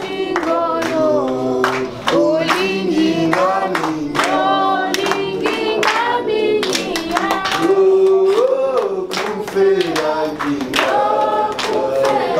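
A group of voices singing a praise song together unaccompanied, with hand claps through it.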